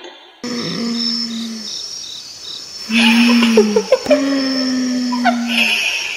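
Night insects chirring steadily, one line pulsing about twice a second, under three long low held tones and a few short falling whines. The sound starts abruptly about half a second in.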